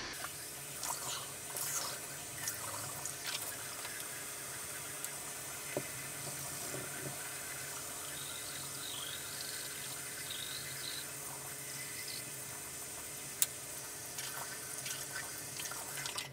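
Bathroom sink tap running in a steady stream, coming on right at the start. One sharp click sounds late on.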